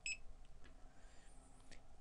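A single short, high-pitched beep from a barcode scanner reading an item's barcode at the point of sale.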